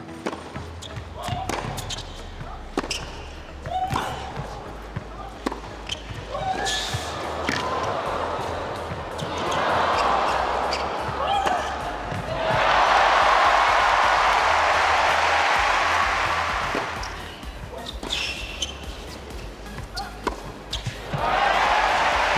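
Tennis rallies: sharp racket strikes on the ball and ball bounces on the court. A crowd cheers and applauds between points, loudest for several seconds about midway.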